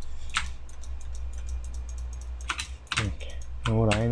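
A handful of sharp computer keyboard and mouse clicks, one early and several close together near the end, over a steady low electrical hum; a man's voice starts just before the end.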